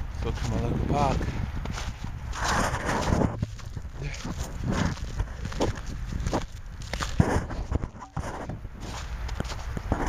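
Footsteps in boots crunching and scuffing on packed, slippery snow, an uneven step every second or less, over a steady low rumble on the microphone.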